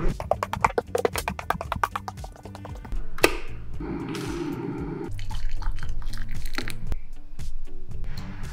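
Background music over tea being made: a sharp knock about three seconds in, then liquid poured into a ceramic mug for about a second.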